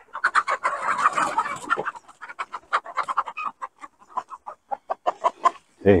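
A flock of chickens clucking and squawking in alarm, scattering from puppies running at them: a busy flurry of calls in the first two seconds, then scattered short clucks.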